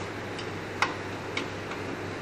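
A few sharp, light clicks, the loudest about a second in, as a road bike's front wheel is fitted back into the fork dropouts and secured, over a steady background hum.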